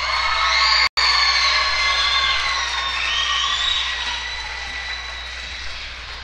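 Audience cheering and applauding, with high whoops and shouts over the clapping. It swells at the start, breaks off for an instant about a second in, then slowly dies down.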